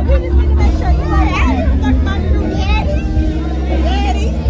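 Several people singing and shouting along over loud, bass-heavy music, with crowd chatter.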